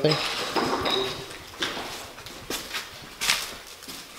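A few separate clinks and knocks of hard objects being moved or stepped on, with a short high ringing in the first second.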